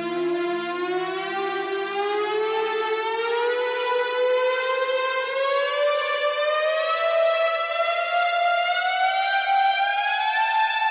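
Electronic music intro: a synthesizer riser, one long tone with overtones gliding slowly upward in pitch and growing gradually louder.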